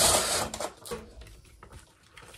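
Tissue paper rustling and crinkling as it is folded over a cardboard box, loudest in the first half second and then fading to a softer rustle.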